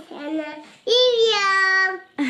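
A toddler's high, sing-song voice: a short call, then about a second in a longer drawn-out call whose pitch slides gently down.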